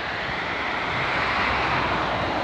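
A motor vehicle passing close by on the road, its rushing noise swelling and then holding steady.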